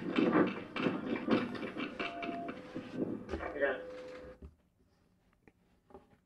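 Indistinct voices, which stop about four and a half seconds in, leaving near silence.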